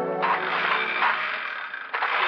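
A short orchestral music bridge ends just after the start. It is followed by a radio sound effect of a push reel lawnmower whirring.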